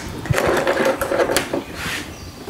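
A thin galvanized steel sheet scraping and rattling on a plastic workbench as it is shifted and clamped down. A low thump comes just after the start and a sharp click about halfway through, from setting the locking clamps.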